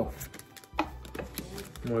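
Pokémon trading cards being handled and flipped, giving a couple of short sharp clicks between the spoken card names.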